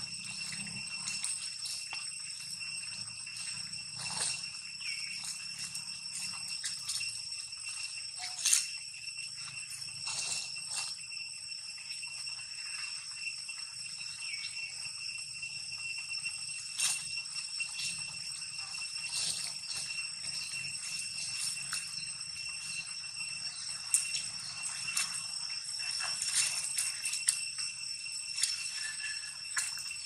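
A steady high-pitched ringing drone of several held tones, with scattered clicks and rustles from macaques moving over stone and dry leaves. The sharpest clicks come about eight seconds in and again later on.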